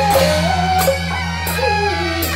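Beiguan processional ensemble playing: a high reed melody with sliding pitches over cymbal clashes and drum, the cymbals crashing about every two-thirds of a second.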